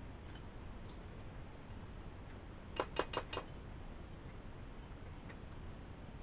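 Spatula knocking against a mixing bowl: four quick knocks within about half a second, near the middle, over a steady low hum.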